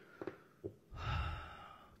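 A man sighs into a close microphone: a few small mouth clicks, then about a second in a long breathy exhale that swells and fades.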